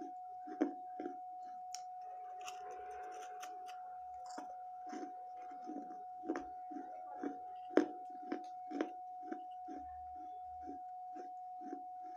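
Close-up chewing of bits of a thick baked-clay saucer: gritty crunches at about two a second, with sharper, louder crunches about half a second in and again near eight seconds.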